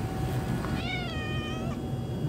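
A calico cat meows once: a single drawn-out call, just under a second long, that rises and then falls in pitch.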